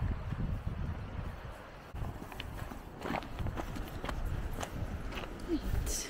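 Footsteps of people walking, a few soft knocks spread through the middle, over a steady low rumble of wind on the microphone.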